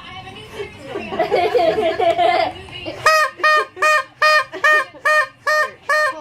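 A quick run of about eight identical short electronic beeps, evenly spaced at roughly two and a half a second, starting about three seconds in.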